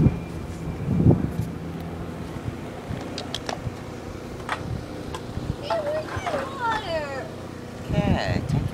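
A distant aircraft droning steadily, strongest in the first couple of seconds and then fading. A child's high, gliding voice comes in near the end.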